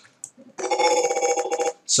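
The animated character's recorded 'Oh boy' voice clip played from the animation timeline, coming out as a steady, buzzy, rapidly repeating tone about a second long. This is the stutter of the dialogue audio as the timeline is scrubbed back and forth.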